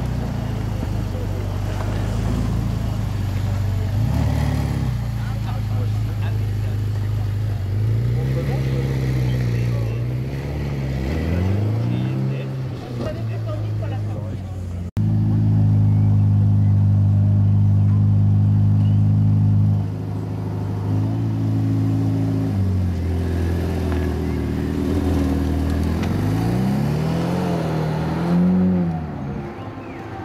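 Ferrari F8's twin-turbo V8 running at low speed, with its note rising and falling as it is revved several times. A steady, louder stretch comes partway through, and a final run of revs comes near the end as the car pulls away.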